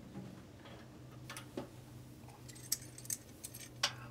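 Scattered light metallic clicks and clinks from hands working the stainless hose fittings on an electric brewing kettle, over a steady low hum.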